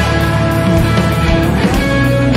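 Distorted electric guitar playing a rock riff, from a Gibson SG-style guitar through a Line 6 Helix Floor amp-modelling patch recorded direct, over a full rock band backing with a steady drum beat.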